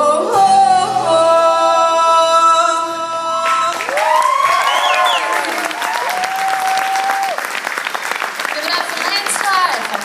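A rock band's closing chord held for about three and a half seconds, then an audience breaking into applause and cheering, with high whoops and shouts over the clapping.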